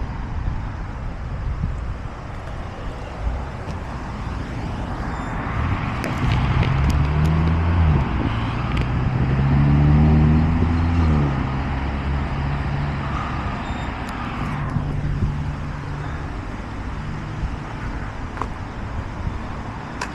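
Road traffic: a motor vehicle passes, its engine and tyre noise swelling from about five seconds in, loudest around ten seconds and fading out by fifteen, over a steady low traffic rumble.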